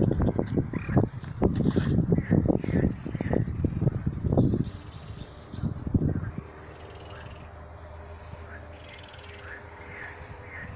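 Frogs croaking in a dense run of rapid pulses for the first four and a half seconds, with one more short call about six seconds in, then a fainter steady outdoor background.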